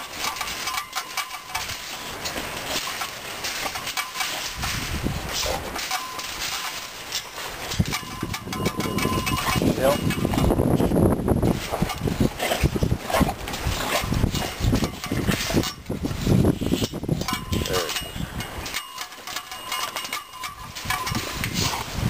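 Chain-link kennel fence and metal gate rattling and clinking as excited dogs jump up against the wire: a dense, irregular run of knocks and clinks, busiest through the middle.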